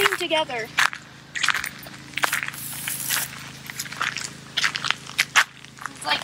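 A brief voice at the start, then irregular crackling clicks and footsteps on sandy dirt.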